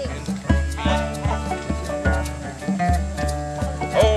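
Live string band playing a tune: plucked and bowed strings over a steady low bass beat of about two and a half notes a second.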